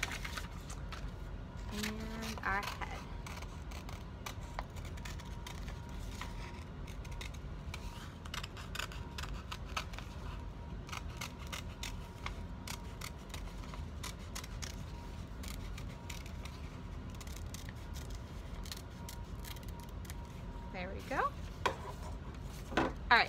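Scissors cutting paper, a long run of short, irregular snips as a circle is cut out.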